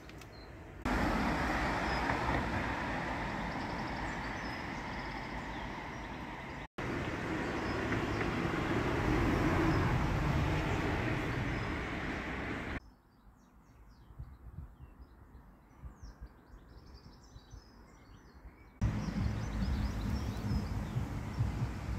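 Street traffic going past, a steady rushing noise that swells and fades and stops and starts suddenly several times. In a quieter stretch of about six seconds in the second half, birds chirp faintly.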